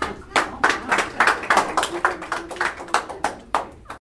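Audience applauding, with distinct individual hand claps several times a second that cut off suddenly at the end.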